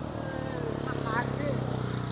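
A small engine running steadily at an even, low pitch.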